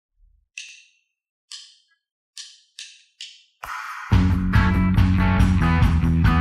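Drumsticks clicked together in a count-in: two slow clicks, then three quicker ones. The band comes in about three and a half seconds in and is playing loudly from about four seconds: electric guitar, electric bass and drum kit.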